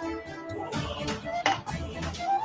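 Background music with a melody from a TV news clip, with a sharp hit about one and a half seconds in.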